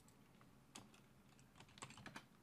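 Faint computer keyboard typing: a single keystroke a little under a second in, then a quick run of several keystrokes near the end.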